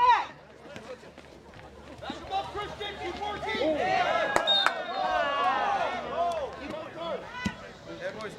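Many voices shouting over one another at an outdoor soccer match. The shouting rises about two seconds in and holds for several seconds, and a single sharp knock cuts through it about four seconds in.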